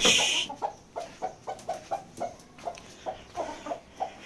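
A short rustling burst at the start, then a hen clucking in a steady series of short clucks, about three a second. This is the clucking of a broody hen.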